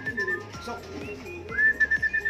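Homing pigeons cooing softly at the loft. About one and a half seconds in, a high, warbling whistle sweeps up and then holds one pitch.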